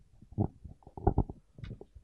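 Handling noise from a handheld microphone as it is passed from one person to another: a series of low bumps and rustles, the loudest about a second in.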